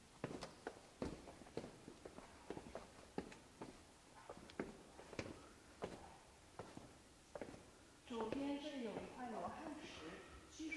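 Footsteps on hard stair steps, about two a second and a little uneven, as people walk down a stairway. From about eight seconds in, a voice speaking over them.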